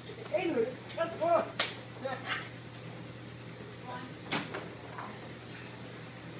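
Lithographic plate cleaning machine running with a steady low hum. Two sharp knocks come about one and a half and four and a half seconds in as the aluminum plates are handled, with faint voices in the room.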